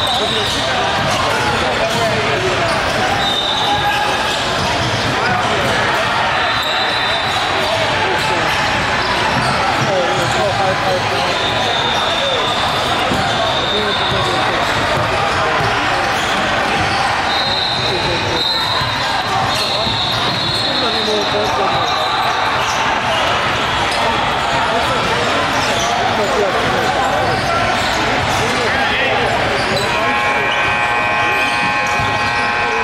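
Live gym sound at a basketball game: many overlapping voices from players and spectators echoing in a large hall, with a basketball bouncing on the hardwood floor. Several short high squeaks come through at intervals.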